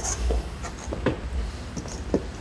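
A large stiff board being picked up and handled: a few short scrapes and knocks as it rubs against the chair and table, over a steady low room hum.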